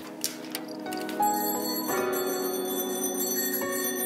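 A lever-type bicycle bell flicked a few quick times in the first half second, over background music.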